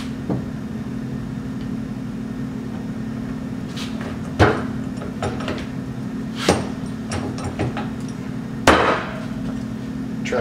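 Knocks and taps as a greased steel sleeve is forced into a tight polyurethane suspension bushing, the bar end pressed against a wooden workbench. There are three louder knocks, about four and a half, six and a half and nearly nine seconds in, with lighter taps between them, over a steady low hum.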